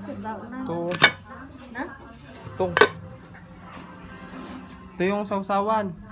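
Two sharp clinks of tableware, about a second in and just before three seconds, over people talking nearby.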